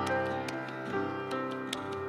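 Yamaha grand piano played solo: single notes struck about twice a second over a held low bass note, each left to ring.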